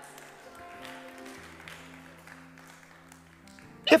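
Soft background music of sustained held chords, with one change of chord about a second and a half in; a man's voice comes in at the very end.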